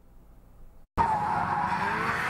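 After a short quiet gap, a drifting car's tyres squeal loudly about a second in, one steady squeal as the car slides sideways under power.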